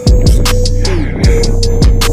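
Backing music with a heavy beat: deep kick drums that drop in pitch about every 0.6 s, quick ticking hi-hats, and a held note that slides down about a second in.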